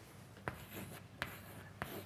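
Chalk writing on a blackboard: faint scratching with three sharp taps as the chalk strikes the board.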